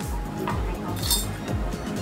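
Background music with a steady beat, over which thin aluminium beer-can pieces clink lightly as they are handled: a small click about half a second in and a brighter metallic clink about a second in.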